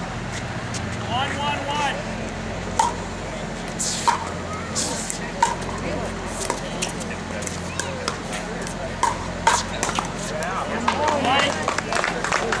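Pickleball rally: paddles striking the plastic ball in a string of about ten sharp pocks, each with a short ring. The hits run from about three seconds in to about ten seconds in, sometimes less than half a second apart.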